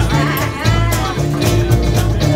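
A live acoustic band playing a song: strummed acoustic guitars over an upright bass line, with women singing.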